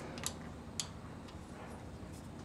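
A few faint, light metallic ticks within the first second as an 8 mm drill bit is fitted into the gap of a 1.8T timing belt tensioner to gauge its piston-to-roller clearance.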